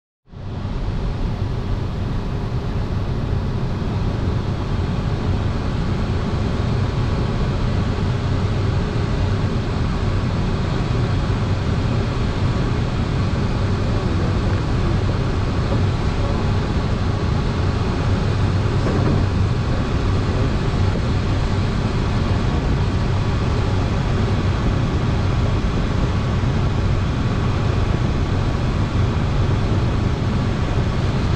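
Steady rush of air around the canopy of a Schleicher ASK 21 glider in flight, a constant low rumble with no engine sound, coming in within the first second and holding even.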